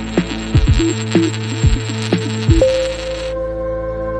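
Channel intro jingle: music with repeated downward-sweeping bass notes. About two and a half seconds in, it settles into one long held note.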